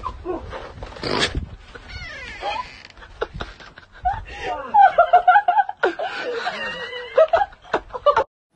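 Several people laughing hard and shrieking, loudest in the second half, with a brief rush of noise about a second in.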